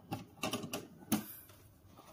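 Handling noise from the plastic fish camera monitor: about four quick clicks and taps in the first second or so, the last one the loudest.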